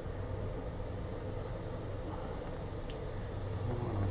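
Steady low mechanical hum of background noise, with a faint tick about three seconds in.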